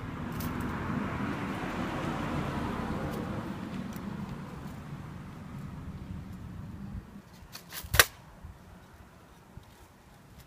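Rushing noise of a passing vehicle that swells over the first few seconds and fades away by about seven seconds in, then a single sharp click about eight seconds in.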